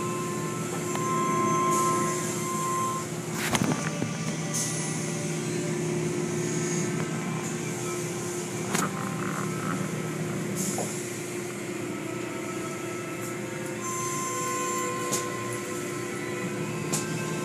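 Automatic tunnel car wash heard from inside the car: soapy cloth strips and brushes scrubbing over the windshield and body, with spraying water and a steady hum from the wash machinery. A few sharp slaps stand out, the loudest about three and a half seconds in.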